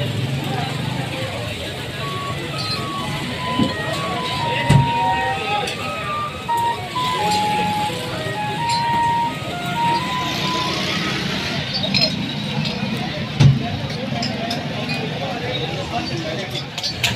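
Busy street-stall ambience: crowd chatter and street noise, with a simple tune of single notes playing for several seconds in the first half. A few sharp metal clinks stand out, one of them near the end.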